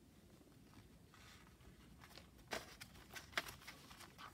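Faint handling of paper and a paper clip on a craft desk: mostly very quiet, with a few light clicks and rustles, the clearest about two and a half and three and a half seconds in.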